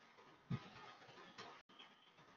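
Near silence: faint background hiss broken by one short, soft thump about half a second in and a fainter click a little later.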